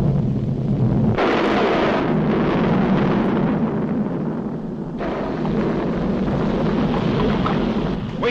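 Animated-cartoon sound effect of a volcano erupting: a loud, continuous rumble that starts suddenly, grows fuller about a second in and eases slightly about five seconds in.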